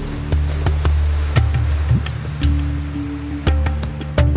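Background music with a deep held bass line and sharp percussive hits.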